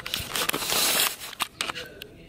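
Close rustling and crackling with several sharp clicks, the sound of a hand-held camera being handled against fabric and carpet. The loudest stretch is a burst of rustle in the first second, followed by a few softer clicks.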